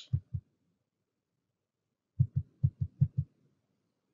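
Short, low, dull thumps: two right at the start, then a quick even run of about seven, roughly six a second, a little over two seconds in.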